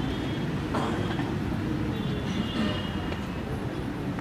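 Steady low outdoor background rumble with no speech, with faint higher tones drifting in about halfway through.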